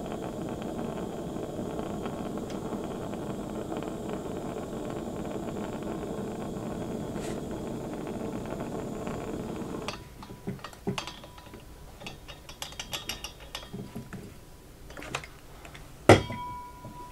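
A steady hiss that cuts off about ten seconds in. It is followed by light clicks, knocks and rustling as hands handle the freshly welded polyurethane belt joint and a wet rag.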